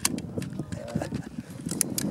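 Muffled voices talking in the background, with a few sharp clicks, one at the start and several near the end.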